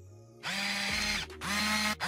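Transition sound effect of a motorised camera lens zooming: two short whirring bursts, the second shorter, each rising briefly in pitch as it starts.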